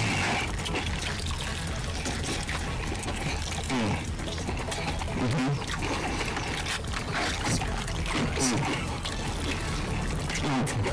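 Wet, squelching chewing and slurping of a man eating a sauce-covered sandwich with his mouth open, as a continuous run of moist mouth clicks and smacks.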